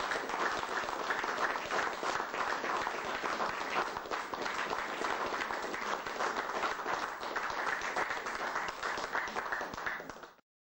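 Audience applause: a dense, steady patter of many hands clapping.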